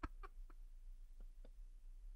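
Faint, breathy laughter: a handful of short huffs in the first second and a half, then quiet room hum.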